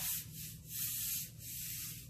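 Paintbrush strokes laying watered-down black chalk paint onto a wooden headboard: three hissing swishes about two-thirds of a second apart.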